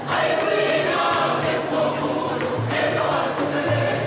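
Large mixed choir of men and women singing a gospel song in full voice, with tall hand drums beating a slow low pulse underneath.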